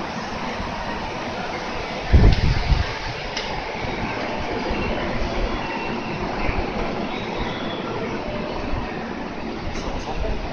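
Steady noise from a JR Central electric train standing or moving alongside the station platform. A loud low thump comes about two seconds in, with a couple of small clicks.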